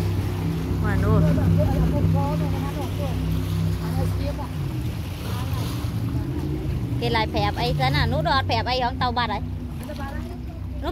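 Jet boat engine running with a steady low drone that eases off about four and a half seconds in. Near the end, loud high-pitched voices rise over it.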